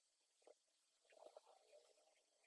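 Near silence: room tone, with a faint tick about half a second in and a faint soft rustle near the middle.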